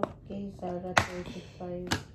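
Sharp clicks of scissor points stabbing at and punching through the plastic seal of a jar lid, a few times about a second apart, loudest about a second in, over low murmuring voices.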